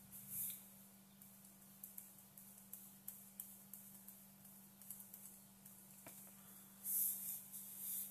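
Quiet room with a steady low electrical hum and scattered faint clicks of computer drawing input, plus a brief soft rush about half a second in and another near the end.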